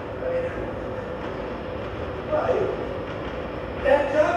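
Steady low rumbling noise, with a short burst of a voice about two and a half seconds in and again near the end.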